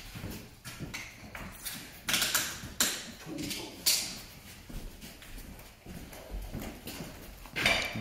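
Work boots stepping and shuffling on large-format porcelain tiles laid in thinset, irregular knocks and scuffs as the tiles are walked into the mortar bed; the loudest steps come about two to four seconds in.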